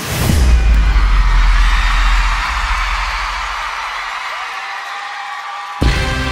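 Live pop concert in an arena: a deep bass boom hits at the start and fades over a few seconds under the crowd's screaming. The full backing track and band come back in sharply just before the end.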